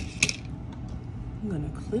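Two sharp clicks about a quarter second apart, then a steady low hum, with a short falling hummed voice sound in the second half.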